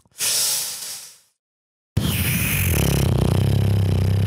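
A breathy exhale close to a microphone, then a short silence and, about two seconds in, a loud steady low buzz.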